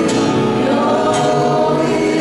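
Live worship song: several voices singing together, accompanied by violin and acoustic guitar, with held notes.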